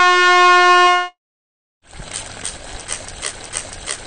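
Cartoon air-horn sound effect: one loud, steady blast of about a second. After a short silence, a water pistol squirts with a hissing spray that pulses about four times a second.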